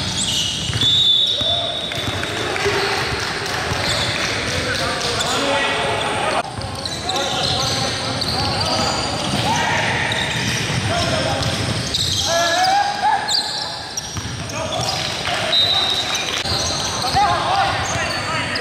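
Indoor basketball game on a hardwood court: the ball bouncing, sneakers squeaking, and players calling out to each other, with scattered sharp knocks throughout.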